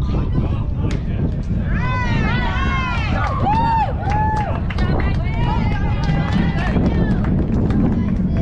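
Voices shouting and cheering, with several high-pitched drawn-out calls from about two to five seconds in and more shortly before the end. A steady low rumble of wind on the microphone runs underneath.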